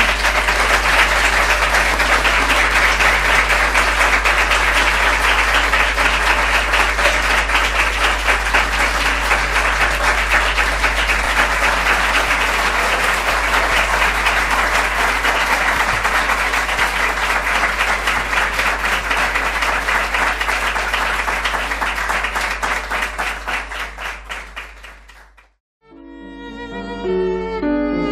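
Audience applauding: dense, steady clapping that thins out and fades over the last few seconds.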